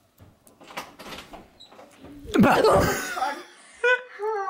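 Soft clicks and knocks of a door being handled for about two seconds, then a loud burst of laughter.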